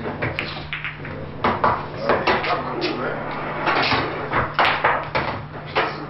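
Speech over a steady low hum.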